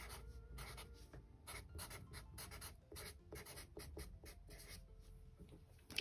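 Black felt-tip marker writing on sketchbook paper: faint, quick, irregular pen strokes as words are lettered.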